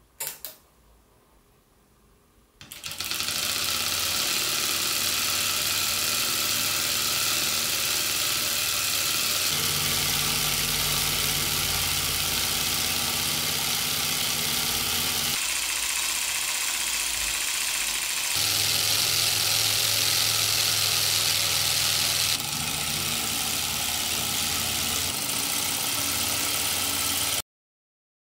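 A click from a bench power supply's switch, then about two seconds later a four-cylinder solenoid boxer engine starts and runs steadily on 7.2 V DC, its sound shifting a few times before cutting off suddenly near the end.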